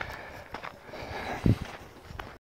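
Footsteps of a person walking, with a brief low thump about one and a half seconds in.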